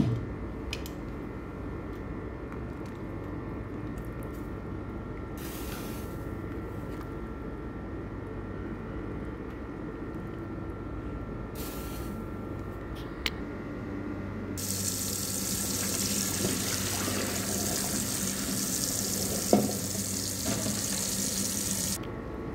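A wok of water with chicken pieces simmering near the boil, a low steady sound. About fifteen seconds in, a louder rush of water running into a sink begins, as the chicken's first cooking water is thrown away, and it carries on to the end.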